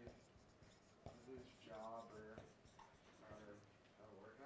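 Marker writing on a whiteboard, faint scratching strokes, with a faint voice speaking briefly in the middle.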